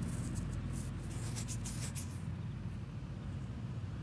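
Faint scratchy rustling of fingers handling a freshly dug coin in the first two seconds, over a steady low background rumble.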